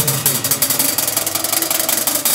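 Tama drum kit played in a drum solo: a fast, even roll of rapid strokes with cymbals ringing over it, the bass drum dropping out.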